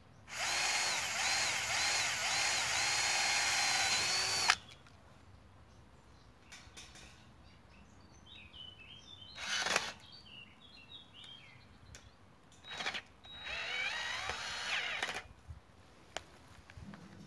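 Cordless drill-driver running self-drilling wafer-head screws through welded wire mesh into a metal fence post: a whine of about four seconds whose pitch wavers under load, stopping with a sharp click. A second, shorter run of the drill comes near the end.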